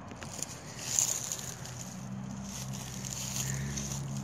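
Scratchy rustling of gloved fingers rubbing dirt off a freshly dug coin. A faint steady low hum joins about halfway through.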